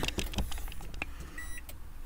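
Scattered clicks, then a short faint electronic beep about one and a half seconds in, as a 2012 Toyota Prius C's power is switched back on.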